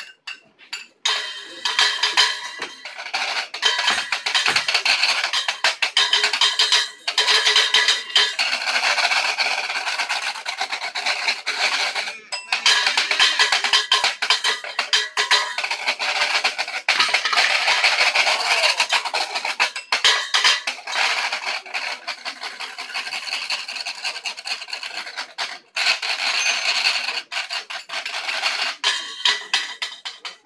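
Washboard played as a percussion instrument: separate taps at first, then fast, dense rhythmic scraping from about a second in, with a few brief gaps, and separate taps again near the end.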